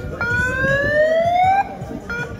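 A loud siren-like pitched tone that slides slowly upward for over a second, then cuts off suddenly, over crowd and street noise.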